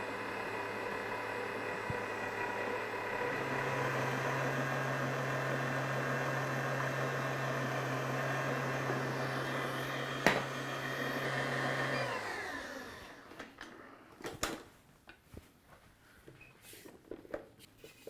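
Kenwood Titanium Chef Patissier XL stand mixer's 1500-watt motor running steadily at low speed, its dough hook working eggs into a yeast dough. Its hum steps up a little a few seconds in, there is a single click near the ten-second mark, and the motor winds down and stops about twelve seconds in, followed by a few light knocks.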